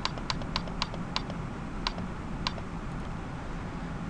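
Computer mouse clicking repeatedly: a run of short, sharp single clicks a few tenths of a second apart, thinning out after about two and a half seconds.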